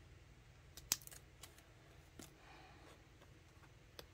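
Paper and sticker handling on a journal page: a few sharp crinkling clicks, the loudest about a second in, then a short soft rustle as the page is rubbed flat.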